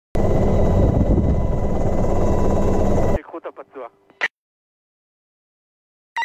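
Military helicopter cabin noise: a loud, dense rumble with a steady high whine, which cuts off abruptly about three seconds in.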